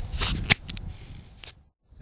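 Wind rumbling on an outdoor camera microphone, with a few sharp clicks in the first second and a half. The sound then cuts out to dead silence for a moment near the end.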